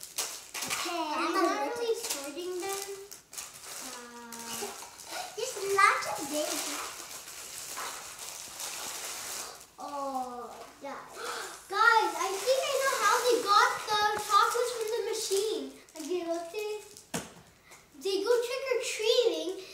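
Young children talking.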